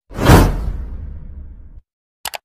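Whoosh sound effect for an animated subscribe button bursting out of a smoke ring: a sudden rush that peaks right after it starts, then fades into a low rumble and cuts off abruptly near the end.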